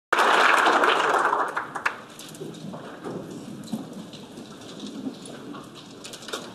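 Applause from a large crowd in a big hall, loud at first and dying away after about a second and a half into low murmur with a few scattered claps.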